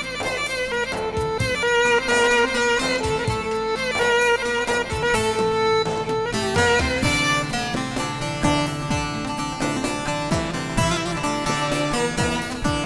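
Long-necked bağlama (saz) playing a plucked melody of quickly changing notes: the instrumental introduction to a Turkmen folk song, before the singing comes in.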